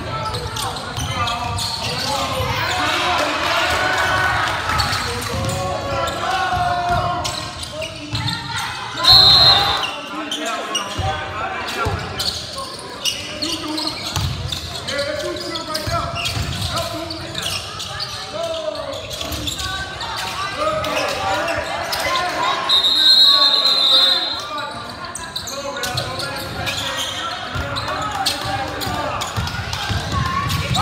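Basketball game sound in a gym: a ball dribbling on the hardwood floor, with voices calling out across the court. Two shrill referee whistle blasts are the loudest sounds, a short one about nine seconds in and a longer one a little past the twenty-second mark.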